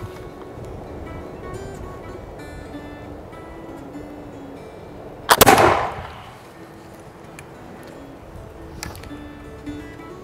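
A single shot from a Pedersoli Brown Bess flintlock smoothbore musket about five seconds in, a sharp report that dies away over about a second. It fires a round ball loaded with a 200-grain black powder charge and cardboard wads above and below the ball. Background music plays throughout.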